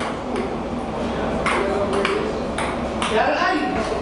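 Table tennis rally: the celluloid ball clicks sharply off the paddles and the table several times at uneven intervals, over a steady background hum. A voice can be heard briefly near the end.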